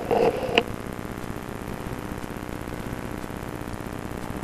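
Steady hiss of an open telephone line while the handset at the far end lies set down, with a few brief knocks and a muffled sound in the first half second.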